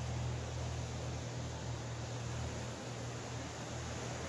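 Steady outdoor background noise: an even hiss with a low, steady hum beneath it, and no distinct events.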